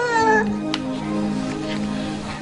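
A baby's brief wailing cry in the first half-second, over steady background music.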